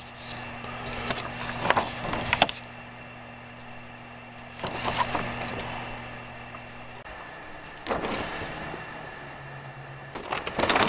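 Thin plastic transparency sheet crinkling and rustling in three short spells as the cut stencil is handled and lifted off the light table, over a steady low electrical hum.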